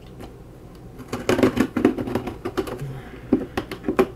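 A blade cutting open a cardboard box through string-reinforced paper packing tape. It starts about a second in with a dense run of crackling and scraping that lasts nearly two seconds, followed by a few separate clicks and scrapes.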